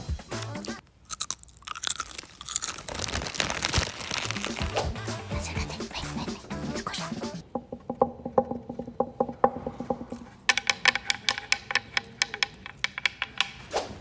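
Brittle leaves of a dried plant sprig crackling and crunching as fingers rub and snap them right at a phone's microphone, in dense runs of sharp clicks that come very fast near the end.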